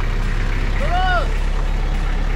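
Pickup truck engine running with a steady low hum, and a single pitched vocal call that rises and falls about a second in.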